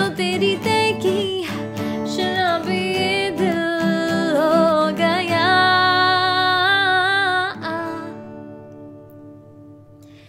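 A woman singing over a strummed steel-string Yamaha acoustic guitar. Past the middle she holds one long note, then the last chord rings out and fades away.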